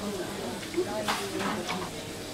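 Quiet, low talk with two short clicks, one about a second in and one shortly after.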